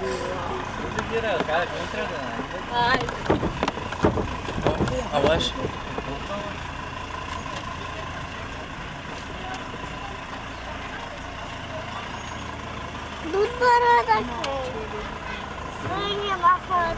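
Cars rolling slowly along a rough street, engines running at low speed, with people's voices calling out over them in the first few seconds and again near the end.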